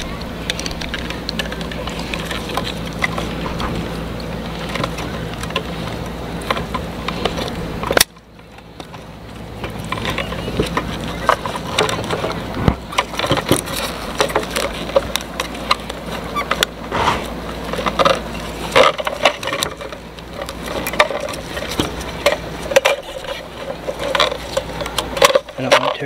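Plastic fuel pump module and its filter sock being handled and fitted together: scattered small clicks, taps and rustles, most of them in the second half. A steady low hum runs under the first third and stops suddenly.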